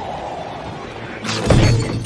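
Animated-film sound effects: glass shards and debris falling after a window smashes, then a loud crash about one and a half seconds in as two bodies hit the floor.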